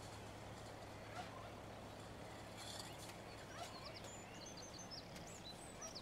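Faint outdoor ambience: a low steady hum with faint bird calls, ending in a quick run of high, rapidly repeated chirps in the last second or so.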